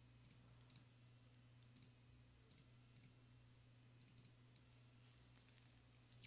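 Near silence with scattered faint computer mouse clicks, several in quick pairs, over a low steady hum.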